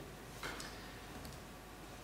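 Quiet room tone with a low hum and one faint click about half a second in, a laptop key pressed to advance the projected slide.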